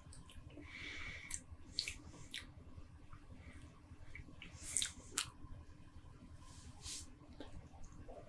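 Faint mouth and breath sounds of a man tasting beer: soft lip smacks, clicks and sniffing breaths, a few a second apart, over a low room hum.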